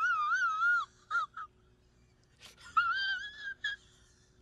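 A man's high-pitched, squealing wheeze of a laugh that warbles up and down for about the first second. It breaks into a couple of short squeaks, then comes back as a steadier squeal later on.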